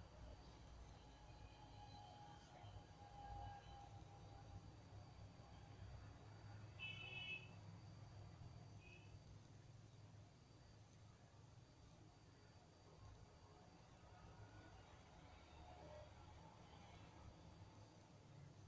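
Near silence: faint room tone with a low hum, and a brief faint high-pitched chirp about seven seconds in.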